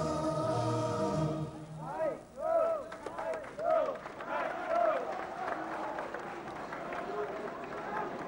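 Choral music ends about a second in, followed by a run of short high-pitched shouts over general crowd noise in the arena.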